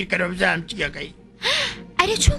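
A cartoon character's dubbed voice: short vocal sounds, then a sharp breathy gasp about one and a half seconds in.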